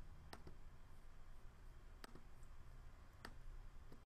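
A few faint, irregularly spaced computer mouse clicks, a close pair near the start and single clicks about two, three and four seconds in, over a low background hum.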